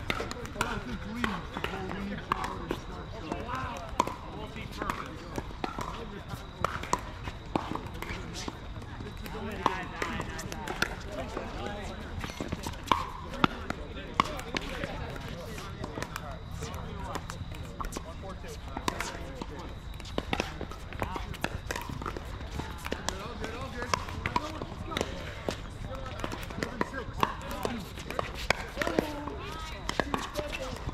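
Pickleball paddles striking the hard plastic ball: many sharp, irregular pops throughout, with ball bounces on the court, over a background of indistinct voices.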